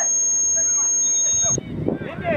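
A steady, high-pitched tone that holds one unwavering pitch and cuts off abruptly about one and a half seconds in, with distant voices shouting underneath.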